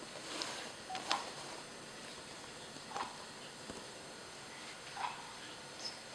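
Faint handling noises: a few soft, scattered clicks and rustles, about five over the stretch, over quiet room background.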